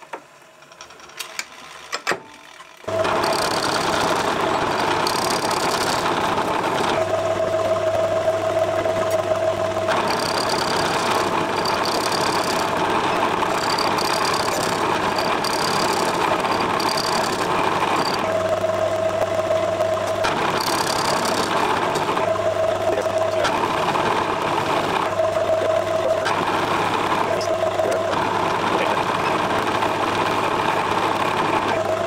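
Metal lathe starting up about three seconds in, then running steadily with its four-jaw chuck spinning while a tool faces down the part. A ringing tone comes and goes over the steady running noise.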